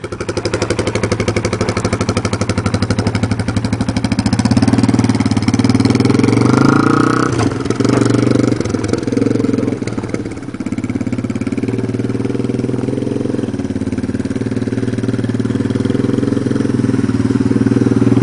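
Yamaha TT-R dirt bike's single-cylinder four-stroke engine running as the bike rides off and passes by. The engine note steps up and down with gear shifts and dips in level about ten seconds in before picking up again.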